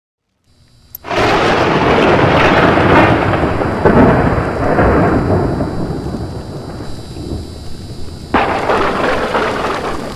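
Thunder sound effect with rain. A sudden crack about a second in is followed by a loud rolling rumble that slowly fades. A second sudden thunderclap comes near the end.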